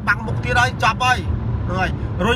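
A man speaking in Khmer, with a brief pause in the middle, over a steady low rumble of car cabin noise.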